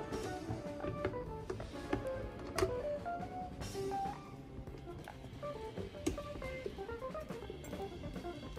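Background music: an instrumental of plucked guitar notes.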